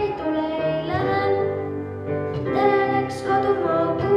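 A boy singing a song into a microphone over instrumental accompaniment, in held notes of about a second each that step up and down in pitch.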